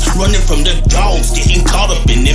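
Hip hop track: a rapped vocal over a beat, with deep bass hits about every 0.6 seconds.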